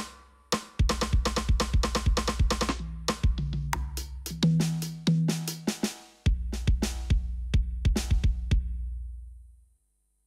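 A programmed drum sequence of sampled kick, snare and cymbal hits plays back over a sustained low bass. It stops briefly twice, once just before the first second and once around six seconds, then dies away near the end.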